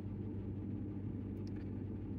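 Ford F-150 engine idling steadily, a low even hum.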